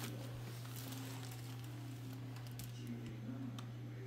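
A steady low hum with faint, indistinct room noise.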